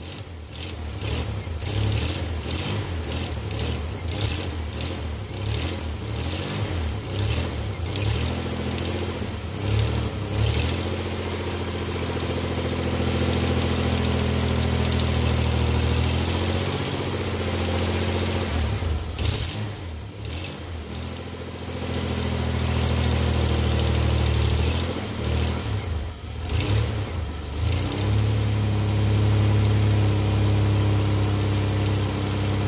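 1998 Dodge Dakota engine running with its serpentine belt and accessory pulleys turning, freshly fitted with a new water pump and being run to check that the belt runs true. It runs unevenly for the first few seconds, then settles into a steadier idle, with the engine speed dipping and picking up a few times.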